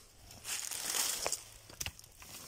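Dry fallen leaves rustling and crackling as a hand reaches into the leaf litter to handle a rock, with a few short clicks in the second half.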